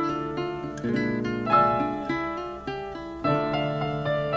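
An eight-bar sampled music loop playing back from the Akai MPC software: a melody of pitched notes, a new one about every half second, each fading after it sounds.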